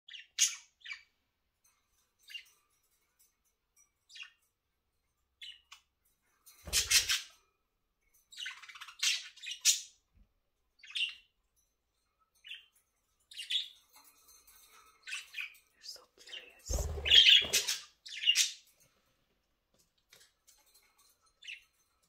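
A small flock of pet budgerigars chirping and chattering in short, scattered bursts with quiet gaps between: the contented sounds of happy budgies. There are two louder flurries, one about a third of the way in and a longer one late on, which is mixed with a low rumble.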